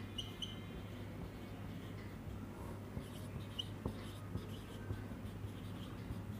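Marker pen writing on a whiteboard: faint scratching with a few short squeaks of the tip, over a steady low hum.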